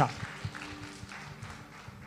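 A pause in a live microphone feed: low room noise with a few faint footsteps on a stage.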